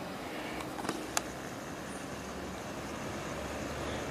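A man's heavy breathing from climbing a steep slope, over a steady background noise, with one small click about a second in.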